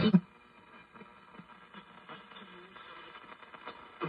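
Vintage tube radio's broadcast sound cuts out abruptly just after the start, leaving a faint hiss with steady thin whistling tones and a faint voice underneath until it comes back at the end.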